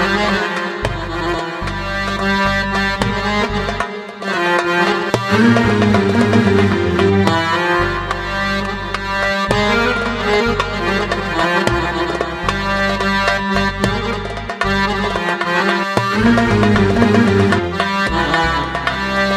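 Electronic keyboard playing Middle Eastern music: a melody over a steady bass line and a drum rhythm.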